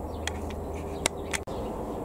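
Steady low background hum with a few short sharp clicks about a second in, and a brief drop-out just after, where the recording cuts.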